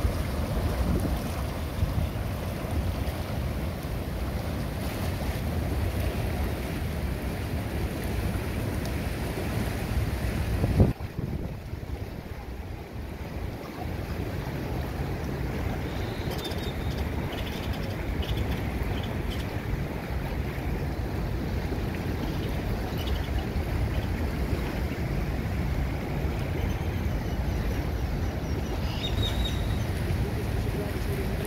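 Whirlpool jets churning and bubbling the water of an outdoor hot tub, mixed with wind buffeting the microphone. About eleven seconds in the sound breaks off abruptly and carries on as a slightly quieter steady rush of wind.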